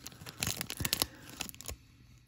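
Crinkling of a Topps baseball card pack's plastic wrapper as it is handled and turned over, a dense crackle that dies away near the end.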